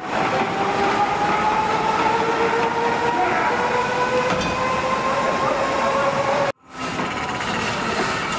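Hand-cranked exhibit machinery whirring and rattling, with a whine that rises slowly as the wheel is turned. It breaks off suddenly about six and a half seconds in, and a similar noisy hum follows.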